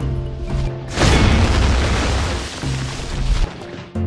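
Background music with a steady bass line. About a second in, a loud crash swells up over the music and fades away over the next two seconds or so.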